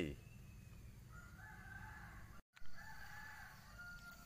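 A rooster crowing faintly, twice: two drawn-out crows, the first about a second in and the second just after a brief dropout in the middle.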